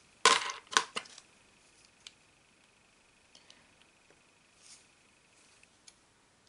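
Small plastic RC car suspension parts clicking and knocking together as they are handled, a quick run of clicks in the first second, then a few faint ticks.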